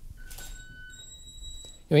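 Stainless-steel fork set down on black acrylic: a light click, then a brief high metallic ringing from the fork that fades within about a second.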